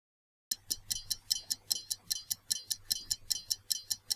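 Stopwatch ticking sound effect: fast, even ticks that start about half a second in and mark a countdown timer running.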